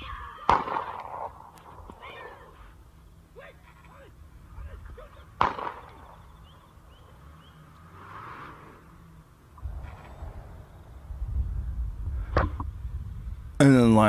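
Audio from a lion-attack video playing faintly in the room: three sharp rifle shots, the loudest about five seconds in, with faint voices between them. A low rumble comes in over the last few seconds.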